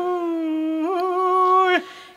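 A single unaccompanied voice holding one long sung note, with no drone beneath it, stepping up slightly in pitch about a second in and breaking off near the end; a solo line in a Lab iso-polyphonic folk song.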